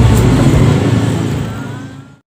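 Steady low engine sound of a motor vehicle running close by, fading out near the end.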